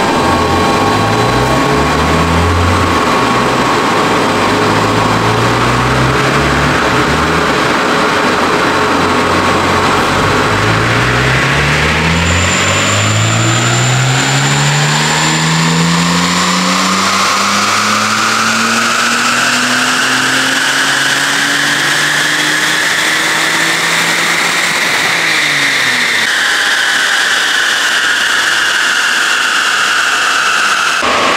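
Supercharged BMW M54 straight-six in an E46 325ti Compact making a full-throttle power run on a chassis dynamometer. After a few shorter rises and dips, the engine note climbs steadily in pitch for about fifteen seconds, with a high whine rising alongside it. About 25 seconds in the throttle closes: the engine note drops away and the whine falls as the rollers coast down.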